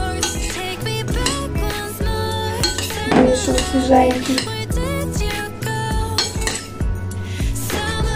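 A metal fork clinking and scraping against a ceramic bowl as a shredded cabbage salad is tossed, with background music playing throughout.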